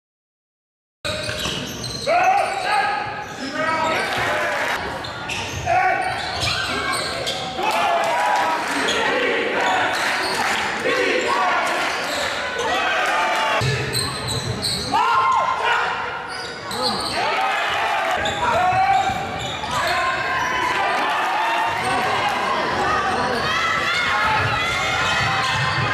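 Indoor basketball game sound starting about a second in: a ball bouncing on the court with sneakers squeaking and players calling out, echoing in a large sports hall.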